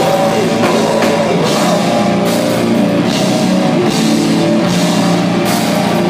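Live heavy metal band playing loud: distorted electric guitars over a driving drum kit, with a few cymbal crashes and screamed vocals into the microphone.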